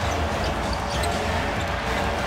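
Basketball game broadcast audio: steady arena crowd noise with a basketball bouncing on the hardwood court.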